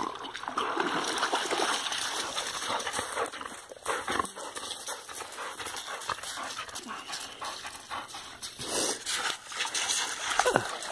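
A dog coming out of lake water and running across a pebble beach: splashing, then many short crunches of gravel underfoot.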